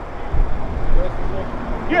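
Low rumble of road traffic going by, strongest about half a second in, with a faint voice in the background and a man's "yeah" at the very end.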